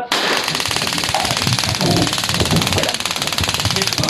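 Police Taser discharging: a loud, rapid electric clicking that starts suddenly and runs on steadily, with faint voices beneath it.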